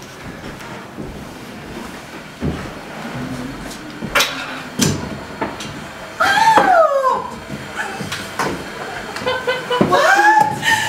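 Two sharp knocks about four and five seconds in, then a loud, high-pitched vocal cry that rises and then falls over about a second. Voices start again near the end.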